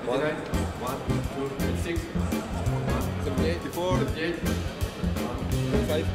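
A K-pop Christmas song by a male vocal group playing: singing over a steady drum beat and bass.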